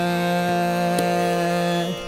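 Female Hindustani classical khayal singer holding one long, steady note in Raag Miyan ki Sarang over harmonium and tanpura accompaniment, with a soft stroke about once a second. The note ends just before the end.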